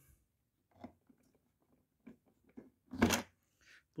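Hard plastic parts of a ride-on toy tractor's trailer hitch being handled: a few faint knocks and scrapes, then one sharp plastic clack about three seconds in as the coupling is worked.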